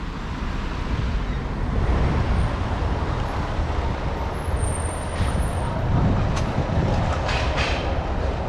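Steady low rumble of city street traffic, with a few faint clicks in the second half.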